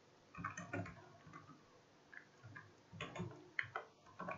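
Computer keyboard being typed on: faint, irregular bursts of key clicks with short pauses between them.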